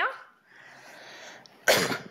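A single short, loud cough close to the microphone, near the end, after a moment of faint hiss.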